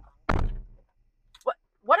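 A car door shutting with one heavy thunk about a third of a second in, dying away within half a second.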